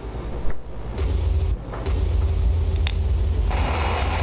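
Low, steady rumble with a faint hiss under it, the ambient noise of a home-made close-up video being played back. There is a single click about half a second in, and a brighter hiss comes in about three and a half seconds in.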